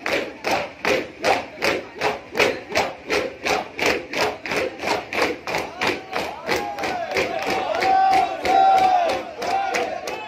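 A crowd of mourners beating their chests in unison (matam), sharp strikes about three a second, with men shouting along to the rhythm. From about seven seconds in, long shouted cries grow louder over the beating.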